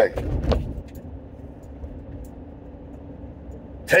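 Steady road and engine noise inside the cabin of a moving car: an even, low hum.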